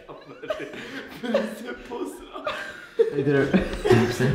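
A young man laughing and chuckling, with indistinct talking from the group; a louder voice comes in about three seconds in.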